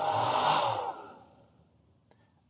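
Hair dryer fan running with a hum on an overloaded modified sine wave inverter, then winding down and falling silent about a second in as the inverter shuts off under the roughly 500 W load.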